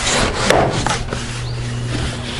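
Stiff-bristled broom scrubbing the underside of a wooden roof, the bristles rubbing and scraping over the boards in uneven strokes.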